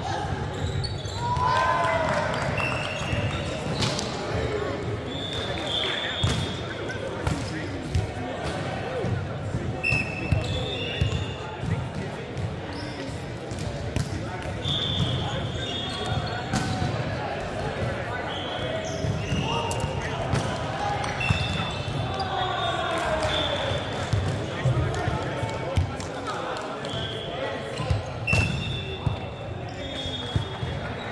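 Indoor volleyball in an echoing sports hall: athletic shoes squeak briefly and often on the wooden court. The ball thuds as it is bounced and hit, and players call out to each other.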